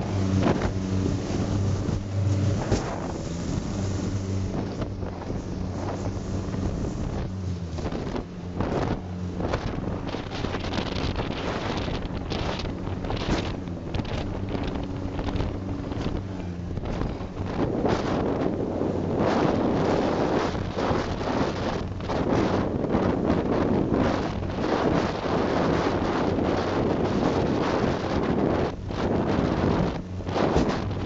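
Albatross runabout's Coventry Climax engine running steadily at speed, under a rush of wind on the microphone and water along the hull, with frequent knocks as the boat slaps through waves. About halfway through the rush of wind and spray grows louder.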